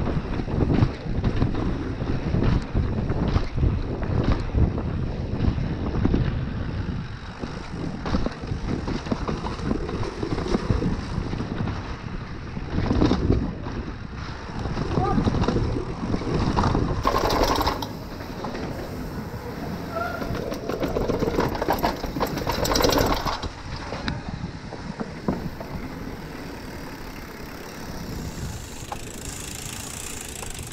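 Downhill mountain bike rattling and clattering over cobblestones and rough paving at speed, with wind rumbling on the camera's microphone.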